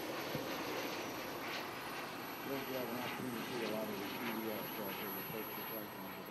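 Small gas turbine engine of a radio-controlled T-33 model jet flying past overhead, a steady rushing jet noise. Voices talk over it from about two and a half seconds in.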